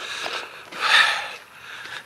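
A man's breath close to the microphone: one noisy, hissy breath that swells and fades about a second in.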